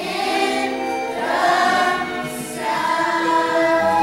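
A chorus of children's voices singing together in a stage musical number, holding several long notes.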